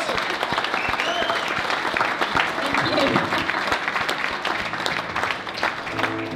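Audience applauding and cheering, with a few whoops, as a song ends. Near the end an acoustic guitar starts to sound again.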